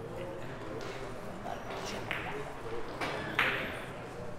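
Murmur of voices in a billiards hall, with two sharp clicks of carom billiard balls striking, the second and louder one near the end.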